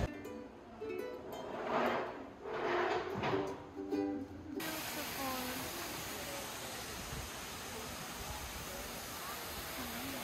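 Plucked-string music, ukulele-like, with a voice for the first four and a half seconds. It cuts off sharply to the steady rush of falling water from a waterfall.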